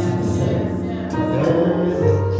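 Gospel music: a choir singing over sustained organ chords.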